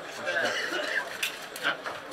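Indistinct men's voices talking, with a few sharp clicks and knocks in the second half.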